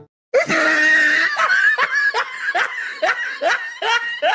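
A person laughing: a run of quick, repeated laughing syllables that cuts in about a third of a second in, after the guitar strumming stops.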